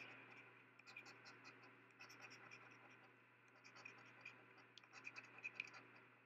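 A coin scraping the coating off a scratch-off lottery ticket, in faint short strokes that come in several runs with brief pauses between.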